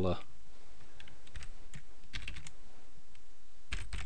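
Computer keyboard being typed on: a short hex colour code entered as scattered keystrokes, with a quick run of about four in the middle and a couple more near the end.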